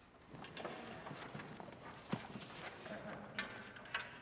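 Faint concert-hall stage noise: scattered light knocks, taps and rustles from the orchestra settling before it plays.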